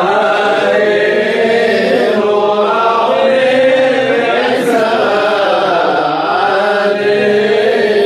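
Several men's voices chanting a Jewish prayer together, holding long, wavering notes in a loose unison.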